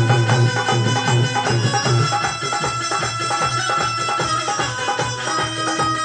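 Live folk music with no singing: a quick, steady drum beat under long held melody notes, played through PA speakers. The low drum notes are heavy for the first two seconds and then thin out.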